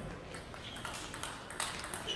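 Table tennis ball in a fast rally: a quick series of sharp clicks as the plastic ball is struck by the rubber-faced bats and bounces on the table.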